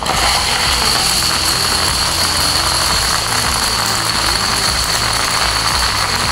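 A large wall of H5 Domino Creations plastic dominoes toppling, thousands of pieces clattering as they fall and pile up on a hard floor: a dense, steady clatter.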